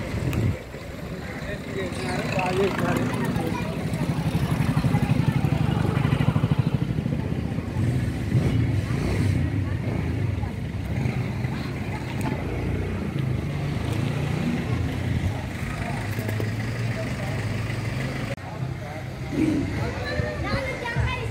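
A vehicle engine running nearby, loudest a few seconds in, with people talking in the background.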